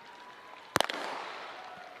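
Starter's gun firing once to start the race: a single sharp crack about three-quarters of a second in, echoing around the stadium, over a low crowd murmur.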